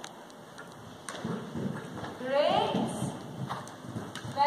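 A voice calls out once, rising in pitch, about halfway through, in a large indoor riding arena. Beneath it is a low, uneven rumble of horses' hooves moving on the arena's sand surface.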